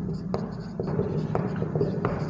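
Marker pen writing on a whiteboard: a series of short, sharp strokes and taps of the tip on the board, over a steady low room hum.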